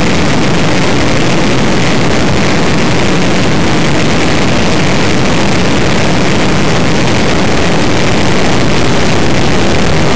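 Streamliner land-speed race car at speed on its run: a loud, steady mix of engine and wind noise that holds an even level without change.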